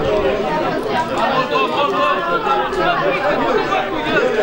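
Several people talking over one another, a steady overlapping chatter of voices close by.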